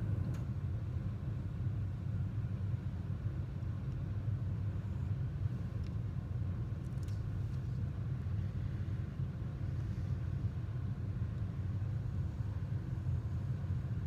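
A steady low rumble of room background noise with no distinct event standing out; light pencil strokes on paper are at most barely present.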